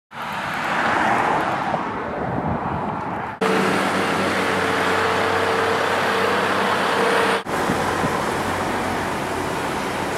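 Heavy diesel machinery running, with a broad engine rumble heard in three abruptly cut takes. The middle take carries a steady hum from a dump truck and excavator working. The sound changes suddenly about three and a half and again about seven and a half seconds in.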